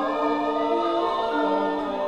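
Javanese court gamelan music from a bedhaya piece: a chorus singing in unison over the gamelan, with slow held notes that step from pitch to pitch.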